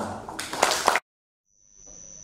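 The tail of a man's voice through a microphone, cut off abruptly about a second in; then a moment of dead silence, and faint room tone with a thin steady high whine.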